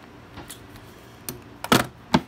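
Hand tools knocking and clicking in a toolbox as a small metal combination square is pulled from its slot: a few light clicks, then a loud clatter near the end.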